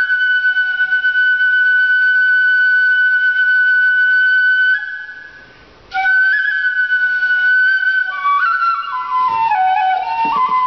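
Shinobue, the Japanese bamboo transverse flute, playing solo. It holds one long high note for about five seconds, fades away for a breath, then comes back in on a new note and falls stepwise through a descending phrase near the end.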